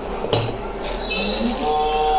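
A knock about a third of a second in, then a long low drawn-out call that rises slightly in pitch in the second half.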